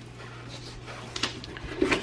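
Low steady hum of room tone, with a few light clicks and knocks about a second in from the cardboard TV box being handled.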